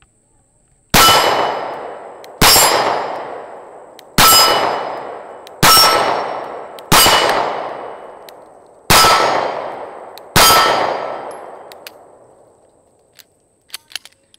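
Sig Sauer P365 9mm pistol fired seven times at steel plates, roughly one shot every second and a half. Each shot is followed by a long metallic ringing that fades over a second or more.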